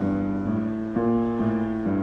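Grand piano played by two people at once, four hands, a run of sustained chords changing about every half second.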